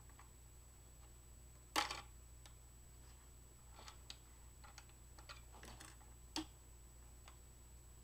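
Hard plastic toy-blaster parts clicking and knocking as they are handled and fitted together: one sharp click about two seconds in, a run of lighter ticks in the middle, and another sharp click later on.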